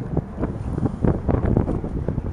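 Wind buffeting the microphone while riding an electric scooter along a street, an uneven, gusty rush.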